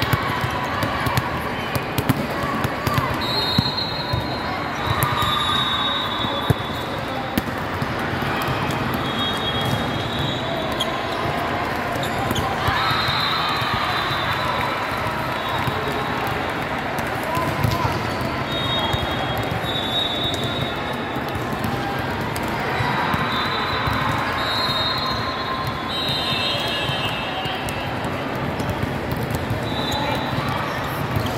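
Ambience of a busy volleyball hall with many courts: volleyballs being struck and bouncing on hardwood courts, over a steady crowd chatter. Short, high referee whistles sound again and again from the surrounding courts.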